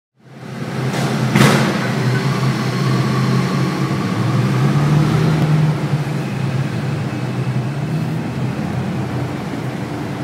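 Mercedes C63 AMG's V8 engine running at low revs, heard from inside the cabin as a steady deep hum. Two short sharp knocks come just over a second in.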